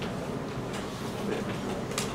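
Chalk drawing lines on a blackboard: a few faint scrapes and taps over a steady room hum.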